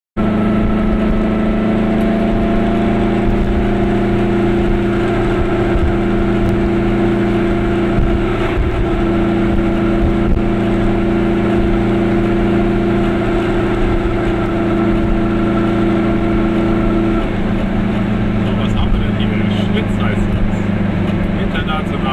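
Car engine drone and road noise heard from inside the cabin while driving at steady speed on an open road. The engine note changes about three-quarters of the way through, and a voice starts near the end.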